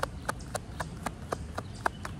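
A tarot deck being shuffled by hand: a quick run of crisp card clicks, about three to four a second, over a low rumble of wind on the microphone.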